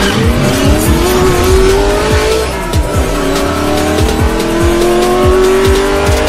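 Intro music with a heavy regular beat, overlaid with a race-car engine sound effect revving up in pitch, dropping back about two and a half seconds in, then climbing again.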